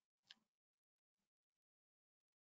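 Near silence with a few faint, short clicks: the clearest about a third of a second in, a weaker one a little after a second.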